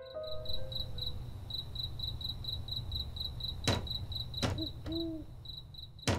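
Night ambience of crickets chirping in an even, high-pitched pulse of about four chirps a second over a low steady hum, with a few sharp clicks in the second half.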